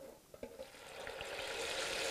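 Hot oil sizzling in an electric deep fryer as food fries, after a couple of light clicks. The sizzle starts faint about half a second in and grows steadily louder.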